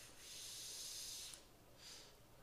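A mouth-to-lung drag on a SMOK Gimlet GCT sub-ohm tank with its airflow closed down to the smallest hole: a steady high hiss of air pulled through the restricted airflow for about a second and a quarter, cutting off, then a brief second hiss near the end.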